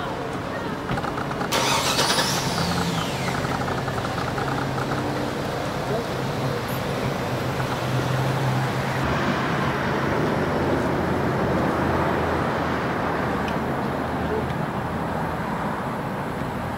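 Car engine running with a low steady hum. About a second and a half in, a sudden louder rush starts and its hiss falls away over the next couple of seconds.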